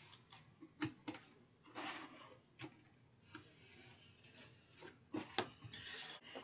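Faint handling of a cardboard box on a cutting mat: sharp taps in pairs about a second in and again near the end, with light scratchy rubbing of cardboard between.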